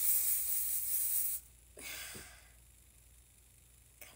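Aerosol hairspray sprayed in one continuous hiss of about a second and a half to set the bangs in place. A shorter, fainter breathy hiss follows about two seconds in.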